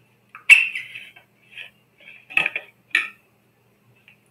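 Clinks and knocks of a water bottle being picked up and handled: a sharp, ringing clink about half a second in, a faint knock, then two more clinks in the second half.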